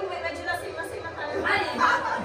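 Only speech: several people chatting in a room, with a short exclaimed "Ha?" near the end.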